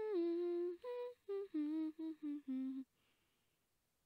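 A young woman humming a short tune: a run of about eight held notes that step mostly downward in pitch and stop a little under three seconds in.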